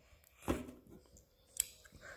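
Handling noise from a loose phone tripod being adjusted: a short knock about half a second in and a sharp click near the end.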